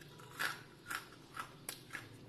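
Crisp fried poha kurkure sticks snapped between the fingers, four short, sharp cracks about half a second apart: the sound of a snack fried fully crisp.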